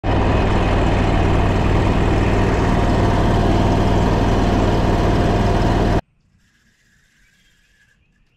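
Predator gas engine pushing a jon boat at speed, running loud and steady, then cutting off suddenly about six seconds in, leaving near quiet with a faint thin high tone.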